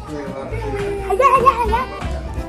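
Children shouting excitedly, with one high, wavering shriek a little past a second in.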